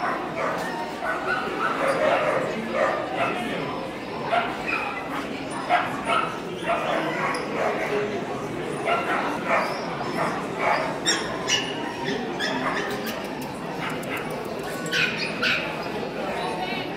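Dogs barking again and again in short yaps over the steady chatter of a crowd in a large hall.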